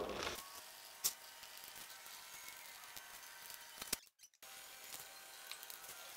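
Faint scraping and light tapping of a wooden stick stirring resin in a plastic cup, with a sharper click about a second in.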